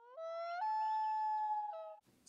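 A comic sound effect dubbed over dead silence: a single clear pitched tone that slides up twice in the first half second, holds steady, then dips briefly before cutting off.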